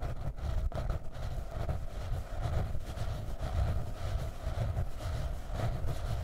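Long fingernails scratching the cover of a hardcover notebook in continuous, uneven strokes, with a heavy low rumble.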